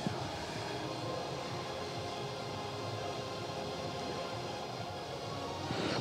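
Steady trade-fair hall ambience with faint background music.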